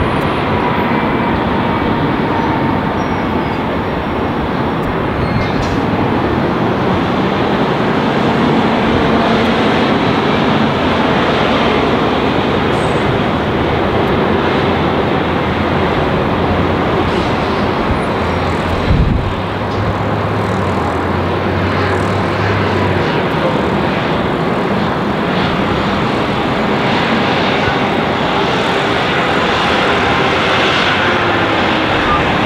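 Jet airliner engines, from a Boeing 757 taxiing onto the runway, running steadily as a loud, even noise. A brief low thump about two-thirds of the way through.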